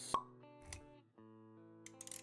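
Intro jingle with sound effects: a single sharp pop just after the start, the loudest sound, then a soft low thump, over held music notes that drop out briefly about a second in and come back.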